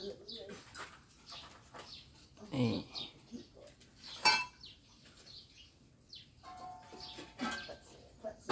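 Low background with faint, scattered bird chirps, a short spoken word, and a sharp click just past four seconds in.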